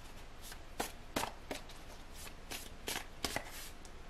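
A tarot deck being shuffled and handled by hand: about nine short, sharp card snaps and slaps at uneven intervals.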